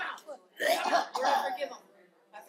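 A person coughing and clearing their throat, in two rough stretches.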